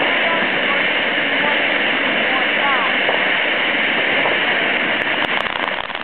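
A ground fountain firework spraying sparks with a steady, loud rushing hiss. Near the end a few sharp crackles start.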